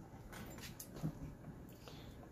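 Faint handling of a leather strap and a small metal buckle on a workbench: a few soft clicks and rustles.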